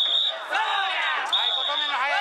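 Danjiri festival procession: many voices of the float's pullers chanting and calling together over the float's festival music. A high held note sounds for about half a second at the start and again about a second and a half later.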